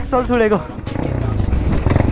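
A rider's wavering, sing-song "yay" whoop, trailing off about half a second in, over a dirt bike engine running at low revs on a downhill. The engine carries on alone after the shout.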